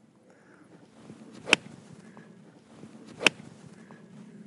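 An iron club striking a golf ball off fairway turf, a sharp click, heard twice about two seconds apart.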